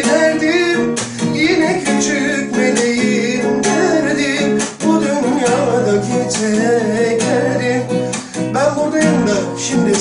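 Acoustic guitar playing a ballad accompaniment, with a man's voice singing a wavering, drawn-out line in the first two seconds and again near the end.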